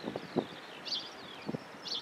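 Faint birdsong, a few short high chirps here and there, over open-air ambience, with two brief low sounds about half a second and a second and a half in.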